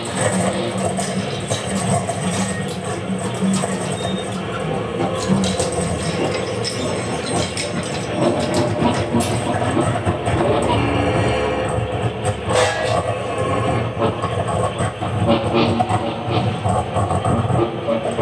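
Free-improvised industrial noise music: a dense, steady wall of noise with a strong low hum and scattered clicks and knocks, made from effected guitar noise, laptop samples and percussion.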